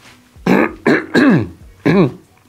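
A man clearing his throat: four short voiced sounds, the third the longest and falling in pitch.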